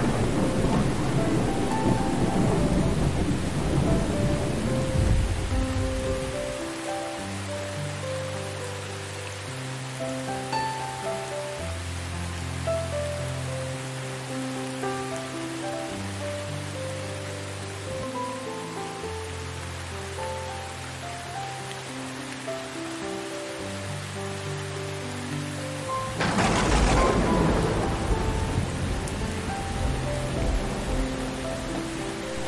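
Steady rain over slow, soft instrumental music with low bass notes. A rumble of thunder fades out over the first several seconds, and a second thunderclap with rolling rumble breaks in near the end.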